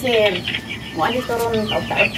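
Chickens clucking close by.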